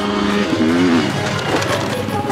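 Enduro motorcycle engine revving hard, its pitch rising and falling as the bike leaves a jump and lands, with background music underneath.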